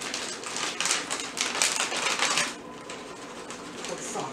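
Plastic bag of shredded mozzarella crinkling as it is handled and opened, a dense crackling for about two and a half seconds, then quieter.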